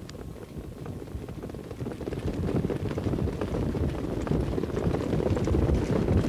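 Hoofbeats of a field of standardbred pacers coming up to the start, a dense patter of hooves over a low rumble that grows steadily louder, with wind on the microphone.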